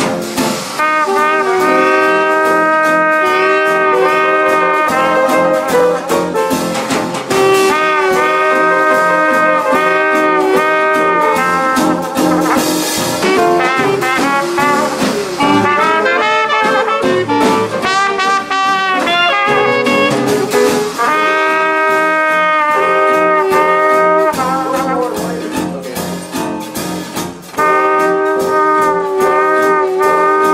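Small traditional hot-jazz band playing live: trumpet and clarinet hold long notes together in ensemble phrases over piano, guitar, string bass and drums. The sound dips briefly near the end before the full band comes back in.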